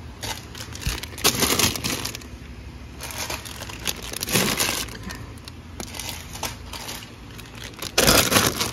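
Plastic snack packets crinkling and rustling in several short bursts as they are handled and pushed onto a crowded shelf.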